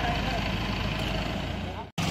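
Steady low rumble of a vehicle engine idling by the road, which drops out abruptly just before the end.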